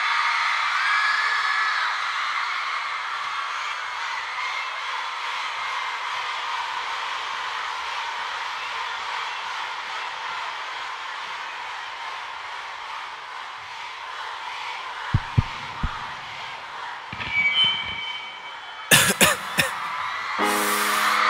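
A recorded concert crowd cheering and screaming, with a few high shouts standing out, slowly fading over the song's intro. Near the end a few low thumps come in, then the track's beat begins.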